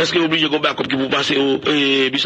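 A man's voice speaking continuously in a radio news broadcast.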